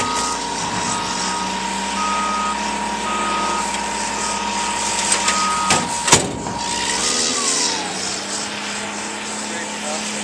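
Diesel bulldozer working a landfill: its engine runs steadily while its reversing alarm beeps repeatedly for the first six seconds or so. Two sharp bangs come near the end of the beeping, and a steady whine drops away in pitch about seven seconds in.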